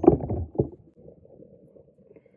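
A woman's speaking voice ends a phrase in the first moment, then a pause holds only a faint, low room rumble.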